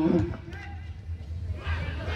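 A man's commentary voice trails off at the very start. Then open football-ground ambience: faint distant voices over a steady low hum.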